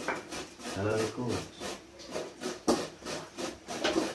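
Pestle grinding spices in a mortar bowl: quick, regular rubbing and scraping strokes.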